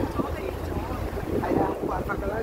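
Wind buffeting the microphone, a steady low rumble over street noise, with snatches of people's voices about one and a half seconds in.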